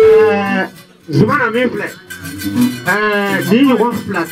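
A man's voice chanting into a microphone in long, sliding phrases. A held note breaks off just after the start, and two more wavering phrases follow after a short pause.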